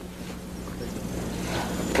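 A steady low hum under faint, even background rumble and hiss.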